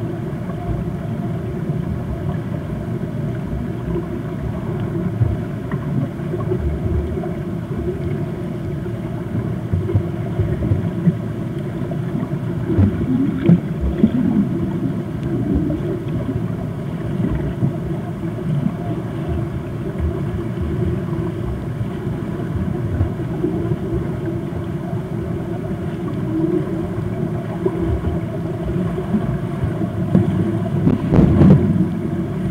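Pool water heard underwater: a steady, muffled low rumble with the churning of swimmers' strokes passing overhead, swelling louder about twelve to fourteen seconds in and again near the end.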